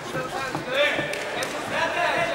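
Voices in a large hall, with a few short dull thuds.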